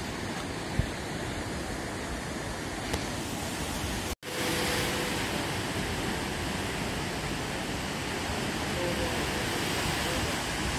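Steady rush of ocean surf breaking on the reef and beach below, with a brief gap about four seconds in.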